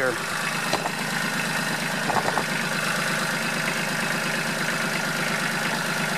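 Tractor backhoe's engine idling steadily, a constant even hum.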